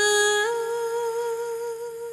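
A high singing voice holding one wordless note, stepping up in pitch about half a second in and held with a slight vibrato, over a faint steady hum.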